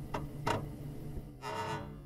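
Intro music: low sustained string-like notes with a few sharp ticks over them, then a brighter, higher note about one and a half seconds in.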